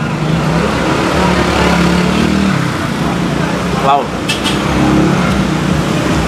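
Road traffic running past: a car going by, its engine rumble swelling over the first couple of seconds, over a steady street background with people talking nearby.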